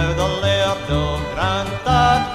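Fiddle and two acoustic guitars playing a traditional Scottish folk tune, with a rhythmic strummed accompaniment and sliding fiddle notes near the start and about halfway through. It is played back from a 1960 vinyl single.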